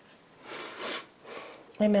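A person sniffing: a short breath in through the nose about half a second in, then a fainter one after it.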